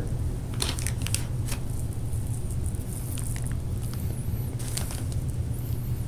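Loose glitter being sprinkled and patted by hand over a glue-coated cardboard star: a few soft rustling brushes in the first second and a half, over a steady low hum.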